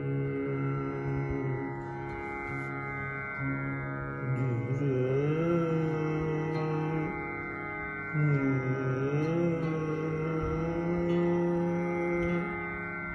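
Khyal alaap in Raag Kalyan: a male voice holds and glides between long notes twice, over a steady drone. A swarmandal is strummed in sweeping glissandi.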